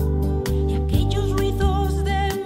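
Music with a steady beat over a sustained bass; a wavering melody line comes in about a second in.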